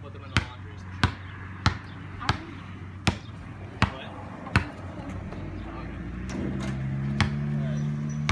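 A basketball dribbled on a concrete driveway, with sharp bounces about every 0.7 s for the first four and a half seconds and one more bounce near the end. A low steady hum rises in the last two seconds.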